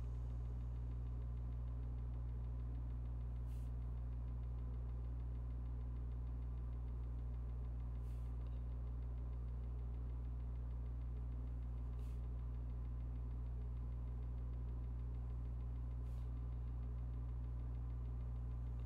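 Steady low electrical mains hum picked up by the recording, with a few faint soft ticks about every four seconds.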